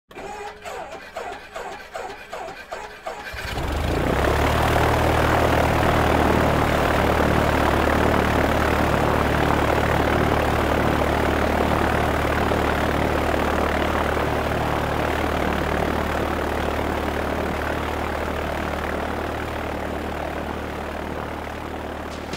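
An aircraft engine cranking over in slow, even pulses, catching about three and a half seconds in and then running steadily, easing off slightly toward the end.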